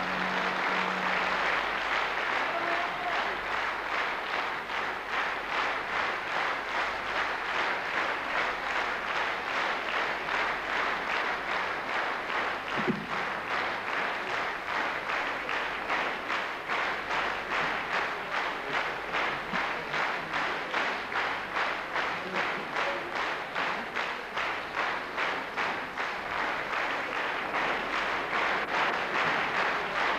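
A concert-hall audience applauding as the ensemble's last held note fades about a second in. From about halfway on, the clapping falls into unison, about two claps a second.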